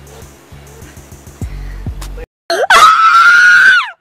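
Background hip-hop beat with heavy bass for about two seconds, then it cuts off and a child lets out a very loud, high-pitched scream, held for about a second and a half and falling in pitch as it ends.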